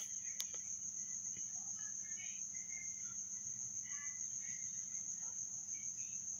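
Steady background noise: a continuous high-pitched whine over a low hum, with a single faint click just after the start.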